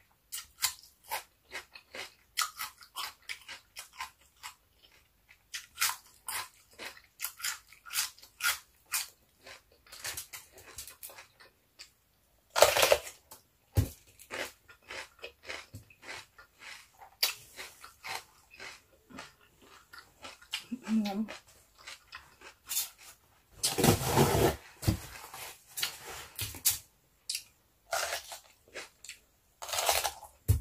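Crisp crunching and chewing of raw cucumber close to the microphone: many short crackling bites and chews, with louder crunchy bursts a little before the middle and about four-fifths in.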